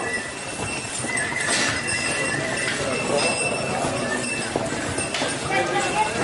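Ponies' hooves clip-clopping on a paved track, amid the voices of a crowd.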